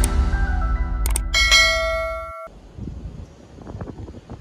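Intro music ending with a subscribe-button sound effect: a single mouse click, then a bright notification-bell ding that rings for about a second. The music and the ding cut off together about two and a half seconds in, leaving faint background noise.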